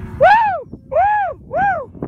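A young calf bawling three times in quick succession. Each call is short, high and arched, rising then falling in pitch.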